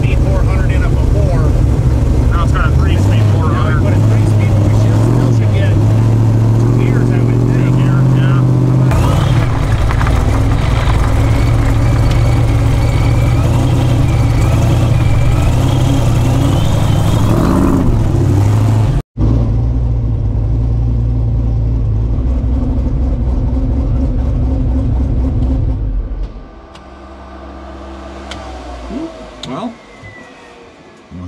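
Supercharged 427 ci LS V8 with a 4.5 L Whipple supercharger, heard in the Chevy Vega on the road: a loud, steady engine drone, with a whine rising in pitch partway through. After a cut the drone carries on, then drops sharply near the end to a much quieter low rumble.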